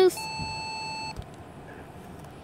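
A single steady electronic beep, one held tone lasting about a second that cuts off suddenly.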